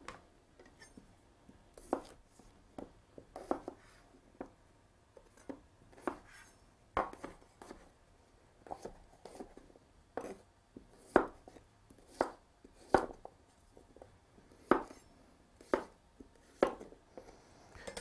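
Chef's knife cutting small red potatoes into chunks on a wooden cutting board. Each stroke ends in a sharp knock of the blade on the board, in an irregular run of about one to two a second.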